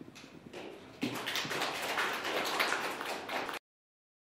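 Audience applauding, scattered at first and filling in to full clapping about a second in, then cut off suddenly.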